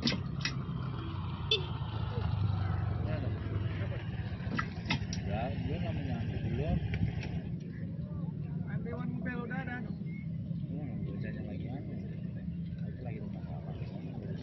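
Road traffic: a motor vehicle going past, its sound falling in pitch over the first few seconds, over a steady low rumble. A few sharp clicks come near the start.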